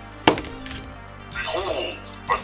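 A 3D-printed talking D20 die lands on a table with one sharp knock and a few smaller knocks as it settles. About a second and a half in, its mini speaker plays a short voice clip, the audio file for the number it has landed on.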